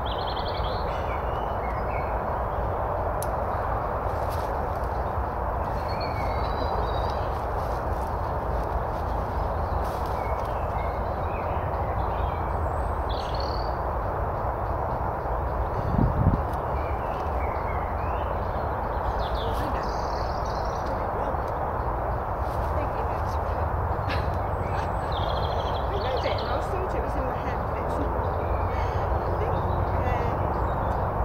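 Small birds chirping at scattered moments over a steady rushing background noise, with one low thump about halfway through.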